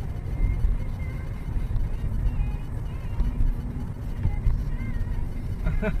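Steady low rumble of a moving car heard from inside the cabin, engine and road noise, with faint music playing.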